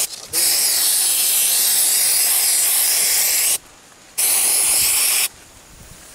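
Aerosol antiseptic wound spray hissing onto an elephant's wound: a long burst of about three seconds, a short pause, then a burst of about a second. The spray is applying medicine to a wound that is being treated.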